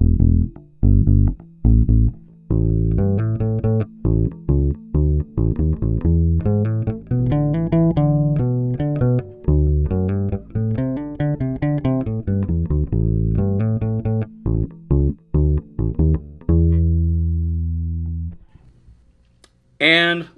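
Squier Vintage Modified 70s Jazz Bass with flatwound strings and Duncan Design pickups, played through an amp on the bridge pickup alone with the tone all the way up: a riff of plucked bass notes, ending on one long held note a few seconds before the end.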